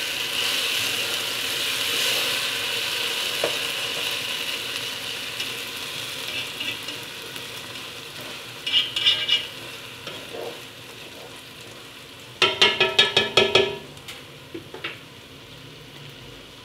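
Toasted rice sizzling in a hot enamel pot as it is stirred with a spatula, just after the blended poblano-pepper liquid has been poured in; the sizzle slowly dies down. Short squeaky pitched sounds come twice, about halfway through and again later.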